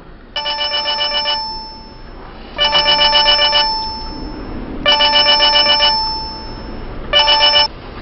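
Smartphone ringtone for an incoming call, ringing in four bursts of about a second each, roughly two seconds apart; the last burst is cut short.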